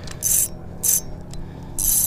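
Spinning fishing reel giving line in three short pulls, each a brief, high-pitched zip, over a steady low hum.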